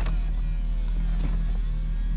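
Power-folding convertible top of a 2006 Chevrolet Corvette in operation: the top's motor gives a faint, fairly steady whine over a steady low hum, with a light click a little past a second in.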